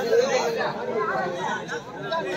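Several people talking at once in indistinct chatter.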